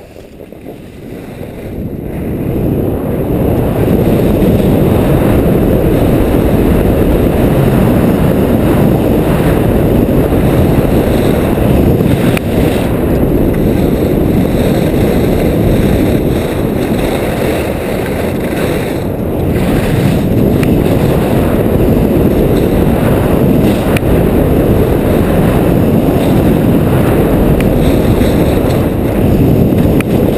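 Wind rushing over the camera's microphone as the skier runs fast down the piste. It builds over the first few seconds and then holds loud and steady.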